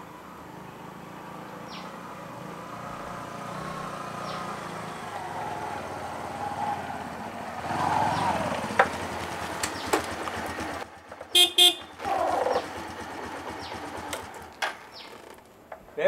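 A small motorcycle engine running as the bike approaches, growing louder over the first several seconds and changing pitch as it slows. A little past the middle come two short toots of the motorcycle's horn.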